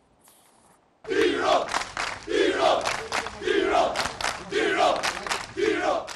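Crowd of football supporters chanting in unison, a short chant repeated about once a second, starting about a second in after a brief near-silence.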